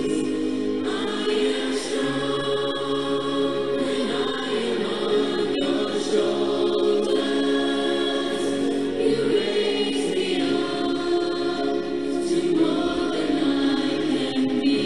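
Background music: a choir singing slow, long-held chords.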